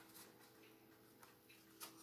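Near silence with a few faint ticks from a grandfather clock, the clearest near the end, over a faint steady hum.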